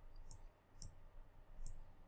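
Three faint computer mouse clicks, spread out over about two seconds, while zooming in on a map on screen.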